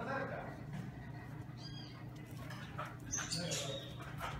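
Dogs at play, with short high-pitched squeaks about halfway through and again near the end.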